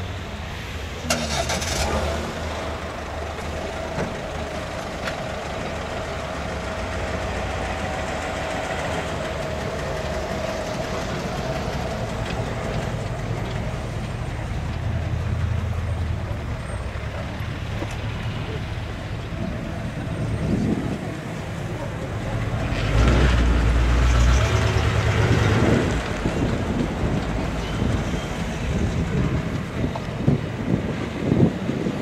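Early-1960s Cadillac's V8 running at low speed as the car creeps forward, a steady low rumble that swells louder for a couple of seconds about two-thirds of the way in.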